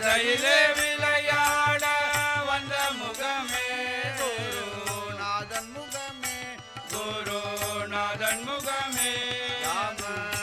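Group devotional bhajan singing: voices chanting a melodic refrain over sustained harmonium tones, with tabla and sharp, evenly spaced clicks from hand clappers keeping a steady beat.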